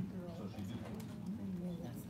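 Indistinct chatter of people talking in the room, with no words that can be made out.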